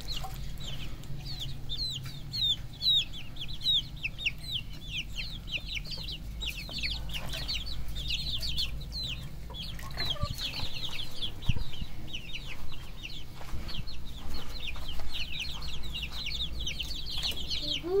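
A flock of young chickens peeping without pause, many short falling chirps overlapping one another.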